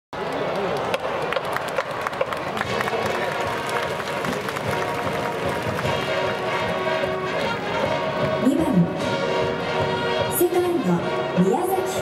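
A school brass band and its massed cheering section: many voices shouting with clapping and drumming, then from about six seconds in, held brass chords join the chant.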